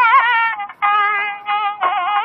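Nadaswaram, the South Indian double-reed pipe, playing a Carnatic melodic phrase in raga Devagandhari with quick sliding ornaments on the notes. The tone breaks off briefly just before one second in and dips again near the end.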